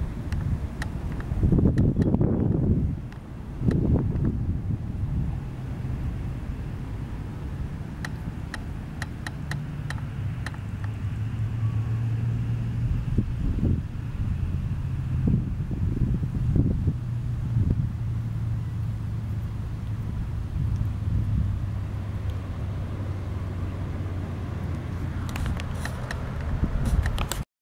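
A low, steady motor hum, with wind gusting on the microphone a couple of times in the first few seconds.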